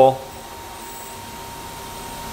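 Steady running noise of a CNC milling machine, with a faint constant whine just under 1 kHz, as a small high-speed-steel drill bit feeds slowly into half of an overlapping hole.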